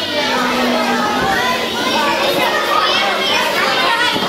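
A crowd of young children chattering and calling out all at once, many voices overlapping.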